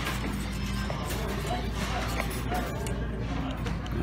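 Background music playing in a busy restaurant, with a low murmur of diners' chatter and a steady low hum.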